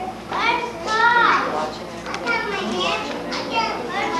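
Young children's voices talking and calling out over one another, high-pitched and overlapping.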